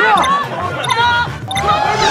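Short voiced exclamations from the cast, mixed with a quick bouncy sound effect added in the edit.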